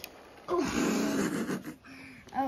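A person's breathy exhale, like a sigh or huff, starting about half a second in and lasting about a second.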